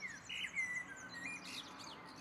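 Birds chirping: several short whistled notes and falling slides, with a faint fast high trill behind them.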